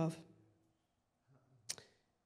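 A pause in speech, near silence with room tone, broken about three-quarters of the way through by a single short sharp click and a faint tick after it.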